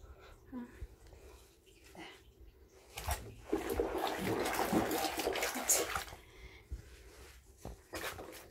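Bathwater sloshing and splashing as a small dog is scrubbed by hand in a foamy bubble bath, loudest for about three seconds in the middle.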